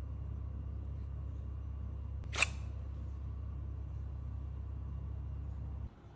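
Steady low hum with one sharp click about two and a half seconds in; the hum drops away just before the end.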